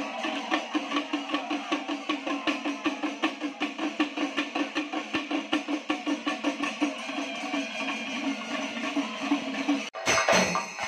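Drum ensemble playing a fast, steady beat, about five strokes a second, over other music. Just before the end the sound breaks off briefly as a new stretch of drumming begins.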